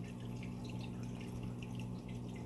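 Aquarium water dripping and trickling in small irregular drops, over a steady low hum.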